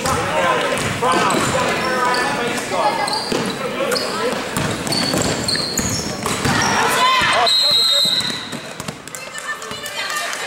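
Gym basketball game sounds: crowd and bench voices and shouts, short sneaker squeaks on the hardwood and a ball bouncing. A shout rises just before a referee's whistle sounds for nearly a second a little past the middle, and then it goes quieter.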